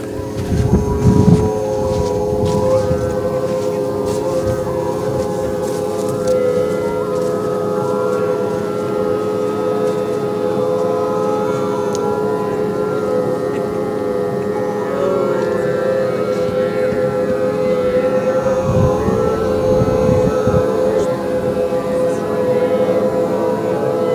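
A group of voices singing one long, steady drone together on two close pitches, with fainter higher overtones sounding above it: group overtone singing.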